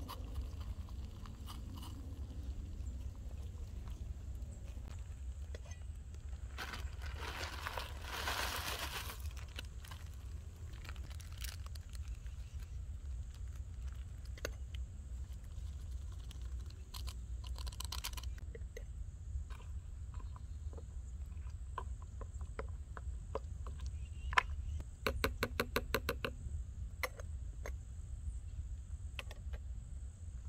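Handling a stainless steel Stanley camp cook cup while making ramen: a burst of crunching and rustling, then scattered light metal clicks and clinks from the cup, lid and utensil, with a quick run of rapid clinks near the end. A steady low rumble lies underneath.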